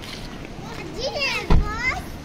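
A child's high-pitched voice calling, gliding up and down in pitch, with a single loud low thump about three quarters of the way through.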